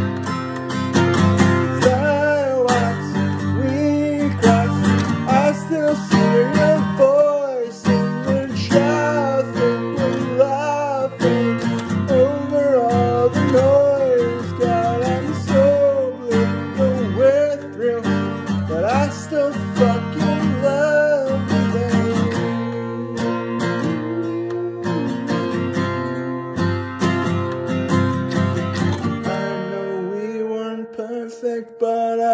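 Acoustic guitar strummed steadily while a man sings over it; the singing stops about two-thirds of the way through, leaving the guitar playing alone.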